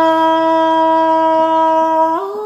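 A reedy wind instrument holding one long, perfectly steady note over a quieter low drone, as accompaniment to a Tai folk song.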